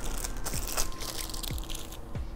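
Clear plastic zip bag crinkling as a bottle inside it is handled, with faint, irregular crackles and small clicks.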